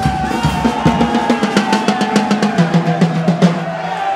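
A carnival murga band playing drum-led music: bass drum and snare drum beat a quick rhythm under a held melody note. The drum strokes crowd closer together near the end, like a snare roll.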